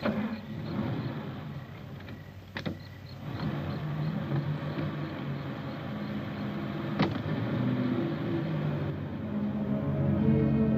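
Car doors shutting with sharp clunks, a few seconds apart, as two people change seats. The car's engine then runs and the car pulls away, with music coming in near the end.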